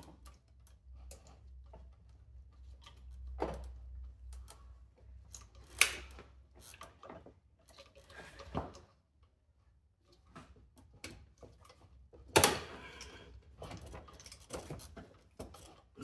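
Scattered metallic clicks and knocks of hand tools working on a SYM Jet 14 scooter engine during dismantling. Two sharper knocks stand out, one about six seconds in and the loudest about twelve seconds in. A faint low hum lies under the first half.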